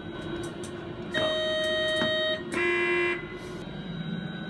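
Two-tone train horn sounded in a train simulator cab: a higher note for about a second, then a lower note for about half a second, over the steady running noise of the simulated train.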